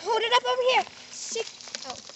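A child's high-pitched voice makes a drawn-out, wavering vocal sound in the first second that was not taken down as words. After it come quieter light rustling and a few small clicks.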